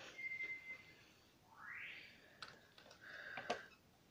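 Faint whistling from a pet African grey parrot: a held note near the start, a rising whistle about halfway through, and a shorter note near the end, with a few light clicks in between.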